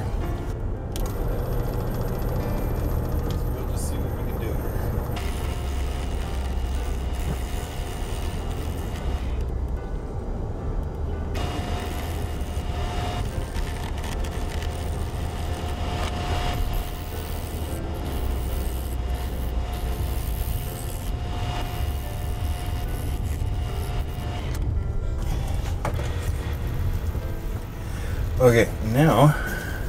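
Wood lathe running while a turning tool cuts a spinning wood blank, over a steady low rumble.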